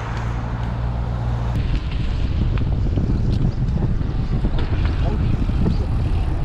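Wind rushing over the microphone of a camera on a moving bicycle, a steady low rumble, with a low steady hum in the first second and a half.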